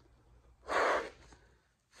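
A short puff of breath blown into the opening of an LP jacket, loosening a record sleeve that is clinging with static. Another puff starts right at the end.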